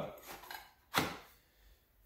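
Metal trapping gear being handled: one sharp metallic clink about a second in, with fainter handling noise before it.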